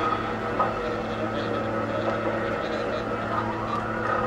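Free-improvised experimental music from saxophone, cello and electronics: a dense, steady drone of several held tones.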